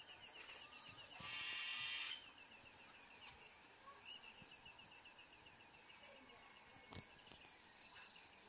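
Birds chirping in series of short repeated notes, with a louder call about a second in that lasts about a second.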